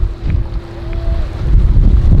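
Wind buffeting the microphone in uneven low rumbles, over the steady hum of a boat's outboard motor running at speed.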